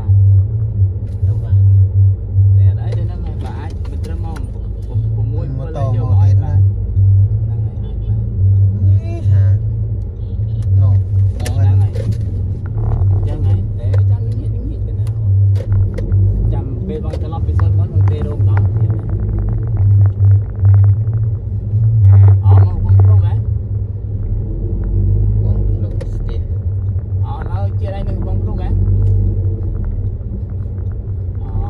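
Low, steady rumble of a car's engine and road noise heard from inside the moving car's cabin, with people talking on and off over it.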